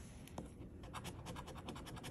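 A coin scratching the coating off a scratch-off lottery ticket in quick, faint, repeated strokes.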